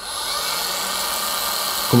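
Flex PXE 80 cordless mini polisher starting up and running at a steady speed: an even whirr with a thin high whine.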